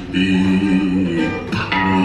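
Country-style music with plucked guitar playing sustained notes.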